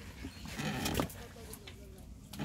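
A short, wavering voice sound of about half a second, about half a second in, with a few faint clicks around it.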